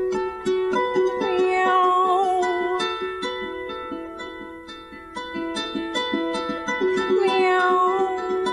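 Lever harp played with a quick, even run of plucked notes, about four a second, over a ringing low note. A wordless, wavering sung line rises over the harp twice.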